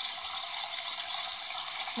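Steady, even rushing of water.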